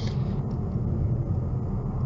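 Steady low rumble of a powerful rear-wheel-drive car cruising on a snowy highway, engine and winter-tyre road noise heard inside the cabin.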